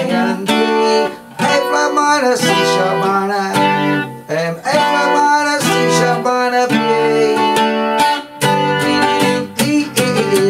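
Acoustic guitar with a capo on the third fret, strummed through the song's chord progression (E minor, C, A minor, B7 shapes) in a steady rhythm, with brief breaks between chords about a second in, around four seconds and around eight seconds.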